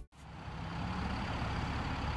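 Steady hum of road traffic, coming in abruptly just after the start.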